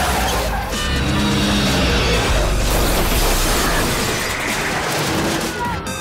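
Film score playing over car-chase sound effects: a car engine, booms and crashes of cars being struck. The sound cuts off at the very end.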